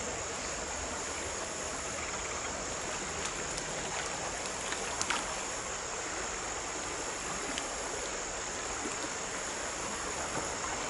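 Shallow creek water running steadily over a riffle, with a constant high insect drone on top. A brief click about five seconds in.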